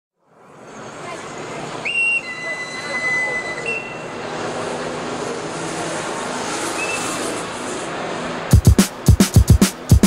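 Metro-train ambience fading in, with a train running, voices, and a few steady whistle-like tones about two to four seconds in. About eight and a half seconds in, a loud electro drum-machine beat comes in hard at the start of the track.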